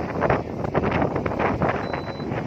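Wind buffeting the microphone in uneven gusts, over the noise of road traffic.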